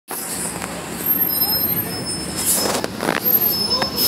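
Nova Bus LFSA articulated city bus driving past in street traffic, with engine and road noise. There are a few brief high squeaks and a burst of hiss about two and a half seconds in.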